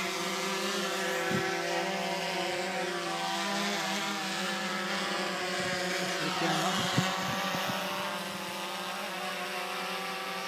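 DJI Phantom 3 quadcopter flying overhead, its propellers giving a steady buzz made of several tones at once. A couple of brief bumps, one sharper about seven seconds in.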